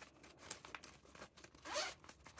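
Metal zipper on a fabric pen case being worked open: a run of small scratchy clicks, with a longer, louder rasp near the end.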